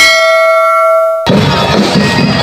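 A bell-like chime rings steadily for just over a second, then cuts off abruptly as a street parade's marching band music and crowd noise come in.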